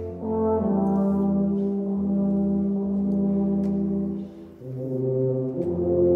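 A low brass ensemble of tubas and euphoniums playing slow, held chords. The music dips briefly between phrases about four and a half seconds in, then a new chord is held.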